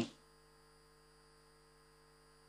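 A faint, steady electrical hum of a few even tones, as from a sound system, in a pause between words. The last syllable of a man's speech fades out right at the start.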